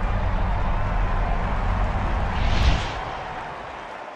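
Cinematic logo-sting sound effect: a low rumbling drone with a wash of hiss that swells into a brief whoosh a little past halfway, then fades away.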